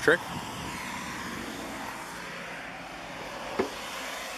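Steady hiss of road traffic on wet pavement, with one short knock near the end.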